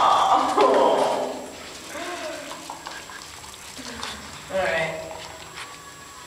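A person's wordless voice, loud at first and fading away about a second in, followed by two quieter vocal sounds, the second about four and a half seconds in.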